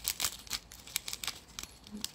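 A small plastic bag of tiny stainless-steel crimp cord-end tips being handled: the bag crinkles and the metal pieces rattle and clink inside it in a quick, irregular run of small clicks.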